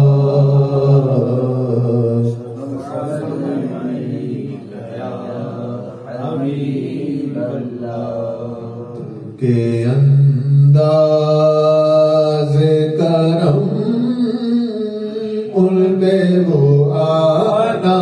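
A man chanting devotional Sufi verses into a microphone, unaccompanied, holding long notes. The chant drops to a quieter passage about two seconds in and rises loud again about halfway through.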